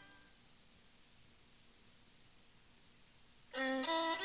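Gap between songs on a cassette: the last music dies away at the start, leaving faint tape hiss, and about three and a half seconds in a fiddle starts playing the next song's introduction.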